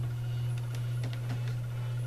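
Steady low hum of a running desktop computer, with a couple of faint mouse clicks as the on-screen clock window is closed.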